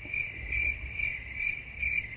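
A cricket chirping: a high, steady trill pulsing about three times a second, starting suddenly.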